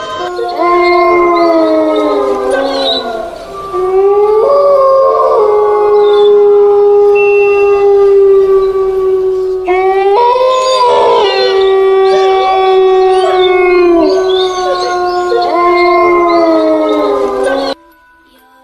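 Canines howling: several long drawn-out howls overlapping, each sliding up, holding for a few seconds and falling away at its end. The howling cuts off suddenly just before the end.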